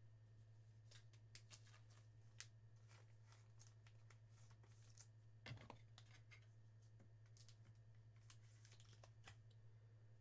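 Near silence with a steady low hum and faint clicks and rustles of a trading card being slid into a hard plastic card holder.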